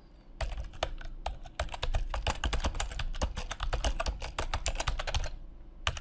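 Typing on a computer keyboard: a quick, irregular run of keystrokes that starts about half a second in and stops about five seconds in, then one last key press near the end.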